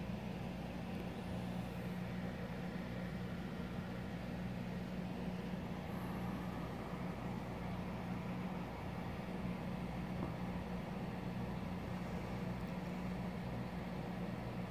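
A steady low machine hum, even in level throughout.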